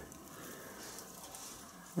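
Faint rustling of straw bedding as a rabbit moves about and noses through it in its hutch.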